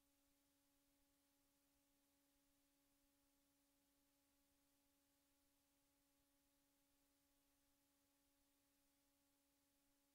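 Near silence: a blank stretch of the soundtrack.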